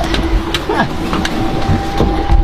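Steady low rumble with a few sharp knocks and bumps, and a steady hum that comes in about a second in.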